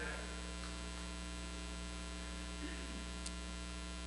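Steady electrical mains hum from the sound system, a low buzz with many even overtones, heard clearly while the speaker pauses. There is one faint click about three seconds in.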